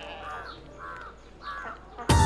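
Three short bird calls, faint, spaced a little under a second apart.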